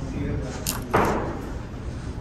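Pool-hall background: a sharp click of billiard balls striking about a third of the way in, then a louder knock about halfway, over a low murmur of voices.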